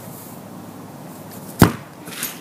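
A single sharp thud of a soccer ball being kicked barefoot, about one and a half seconds in.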